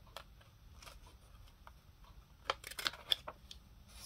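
Plastic tag corner punch pressed down on a paper card: a quick cluster of sharp clicks and a snip about two and a half seconds in as the blade cuts the corner, after faint rustling of paper.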